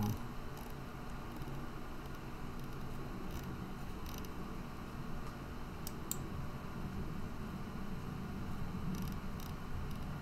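Steady low room hum with a few faint, scattered clicks of a computer mouse.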